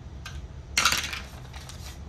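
A six-sided die thrown into a small wooden dice box: one quick rattle of clacks about three-quarters of a second in as it tumbles and settles.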